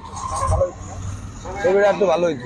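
A man's speech that pauses and resumes near the end, with a brief low rumble about half a second in during the pause.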